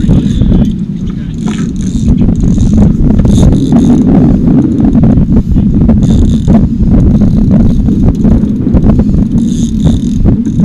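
Steady low rumble aboard a small fishing boat, broken by scattered knocks and clicks and short bursts of hiss.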